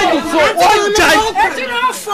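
Several people talking loudly over one another, excited, overlapping voices in a crowd.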